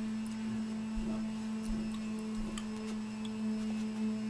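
A steady low electrical hum, one unchanging tone with faint overtones, and a few soft low thuds partway through.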